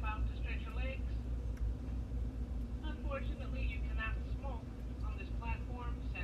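Steady low rumble inside a moving passenger train's carriage, with muffled, indistinct talking over it.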